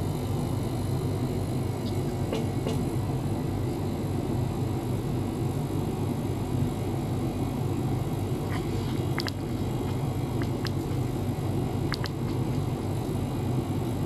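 Small ultrasonic cleaner running: a steady low hum and rumble, with a few faint ticks scattered through.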